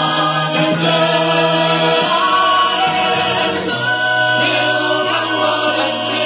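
Mixed chorus of men and women singing sustained chords together through stage microphones, the chords shifting every second or two.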